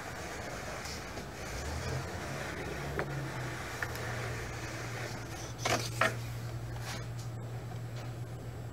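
Household clothes iron sliding and rubbing along iron-on wood edge banding on a plywood panel, over a steady low hum, with a couple of brief knocks about six seconds in.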